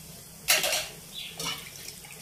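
Eggs frying in oil in a pan, sizzling: a short burst of hissing about half a second in, then a fainter hiss with a smaller flare-up later.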